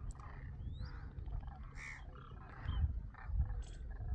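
Distant calls of a large flock of demoiselle cranes, many overlapping short calls. One rising whistle comes early, and low rumbles come near the end.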